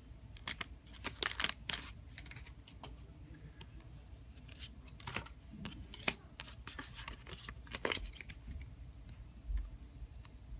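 A stack of Pokémon trading cards being handled and sorted in the hand: irregular card-on-card slides and flicks with sharp little clicks.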